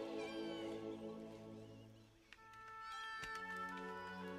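Film score of soft held orchestral chords that fade almost away about two seconds in, then swell again with a new chord. Short, wavering high-pitched animal calls sound over the music near the start and again about three seconds in.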